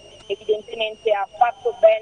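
A woman speaking Italian over a telephone link, with a faint steady high-pitched tone under her voice.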